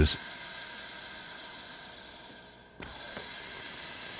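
Compressed air venting from the pressure chamber of a Drufomat Scan thermoforming machine as its release button is held: a steady hiss that fades away over about two and a half seconds, then a second hiss starts abruptly and carries on. This is the chamber depressurising at the end of the cooling cycle.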